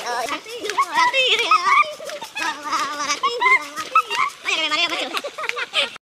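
Men's voices yelling and shrieking wildly without words: wavering, high-pitched cries in quick succession, some of it laughter-like.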